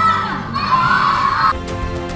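A group of children shouting and cheering together, cut off suddenly about one and a half seconds in by news-bulletin transition music with a strong bass.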